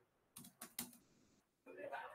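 Faint typing on a computer keyboard: a few quick separate keystrokes in the first second, then more soft sound near the end.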